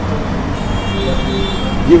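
Steady low background rumble and hum, with a man's voice starting a word right at the end.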